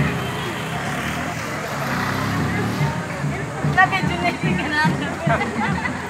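Teenagers' voices chattering and calling out over one another as a group walks, with a few high-pitched calls a little past the middle.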